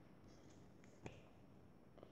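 Near silence with a single faint click about a second in.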